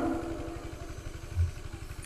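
A low, steady rumble like a small engine running, heard in a pause of amplified speech, with the voice's echo dying away at the start and a brief low thud about halfway through.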